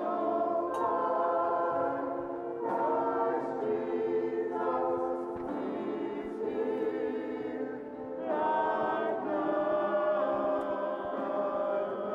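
Church choir of men and women singing a slow sacred song in sustained chords, the phrases changing every few seconds.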